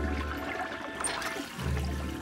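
Cartoon toilet-flush sound effect, a rushing of water, over background music with low bass notes.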